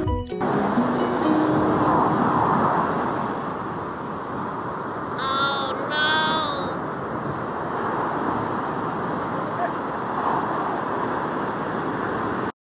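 Surf breaking on a sandy beach: a steady rush of waves that swells every few seconds. About five seconds in come two short pitched calls, each rising and then falling.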